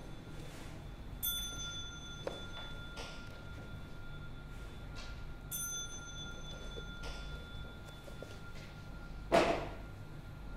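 A small bell struck twice, about four seconds apart, each stroke ringing with several high tones that fade over a second or two. Near the end comes one loud, brief thump.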